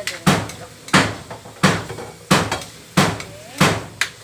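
Metal spatula knocking and scraping against a steel wok while stirring pork belly pieces frying in oil, a steady rhythm of about six sharp clanks, each ringing briefly.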